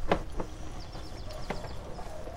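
Sewer inspection camera's push cable being pulled back onto its reel: a few sharp knocks and, about a second in, a quick run of faint ticks over a low steady rumble.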